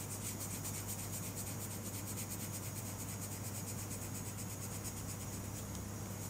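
Colored pencil rubbing across paper in rapid, even back-and-forth shading strokes, a steady dry scratching.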